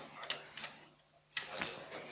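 Plastic drinks bottle crinkling and clicking as it is handled, in two bursts of crackles about a second apart.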